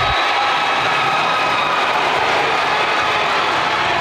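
Steady, loud, echoing din of a basketball game in an indoor sports hall, a mix of crowd noise and court sounds.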